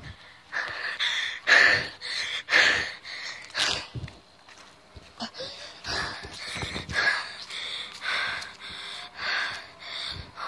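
A boy breathing hard close to the phone's microphone, loud uneven breaths roughly once a second, out of breath from running.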